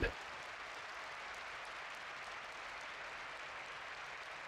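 Faint, steady applause from an arena crowd.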